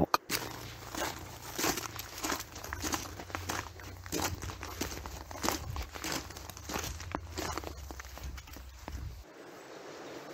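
Footsteps crunching through grass and leaf litter, with irregular crackling rustles over a low rumble that drops away about a second before the end.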